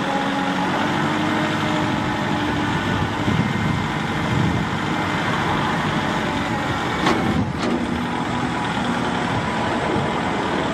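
Kubota MX5400 tractor's four-cylinder turbo diesel engine running steadily as the tractor drives and works the front loader, raising and lowering the bucket. Two sharp knocks about half a second apart come about seven seconds in.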